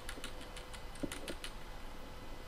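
Computer keyboard keystrokes: a run of separate, irregular key clicks as a typed command line is edited.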